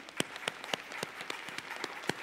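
Congregation applauding, with one person's sharp claps close to the microphone standing out above the applause about four times a second.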